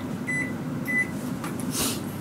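Microwave oven keypad beeping twice, short high beeps as it is set to heat for two minutes, over a steady low hum of the oven running. A brief rustle near the end.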